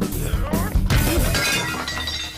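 A vase smashed and shattering about a second in, its pieces ringing and tinkling briefly, over loud dramatic background music.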